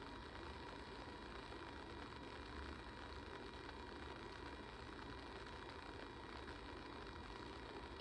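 Quiet room tone: a faint steady low hum with light hiss, and no distinct sounds.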